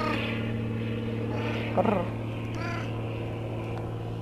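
A domestic cat meowing twice, short calls about two seconds in, over a steady low hum.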